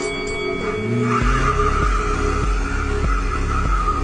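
Car tyres squealing as the wheels spin in a burnout. Electronic music with a heavy bass beat comes in about a second in.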